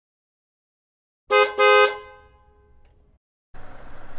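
A vehicle horn honking twice: two short blasts in quick succession about a second and a half in, the second a little longer, with a ringing tail that fades away.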